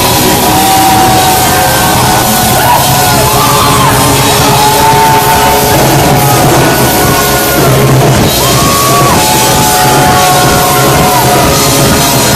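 Live rock band playing loudly: electric guitar and full band, with a lead line of held notes that slide up and down.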